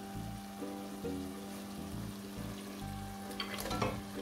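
Soft background music with held notes over a faint sizzle of onion-tomato masala frying in a steel pot. Near the end comes a brief clatter as boiled mutton pieces are tipped into the pot from a glass bowl.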